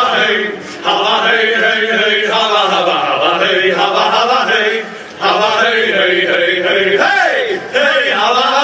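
A group of male voices chanting a robber song together in unison, in loud phrases broken by brief pauses.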